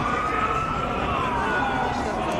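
An emergency vehicle's siren wailing, its pitch climbing slowly, peaking about a second in and then falling, over the chatter of a crowd.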